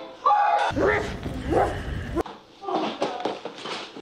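A woman screaming in short, pitch-bending cries, with a low rumble under the loudest part.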